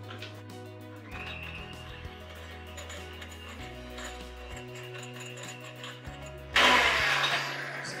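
Background music, with an electric hand mixer's beaters briefly running loud in a glass bowl for about a second near the end.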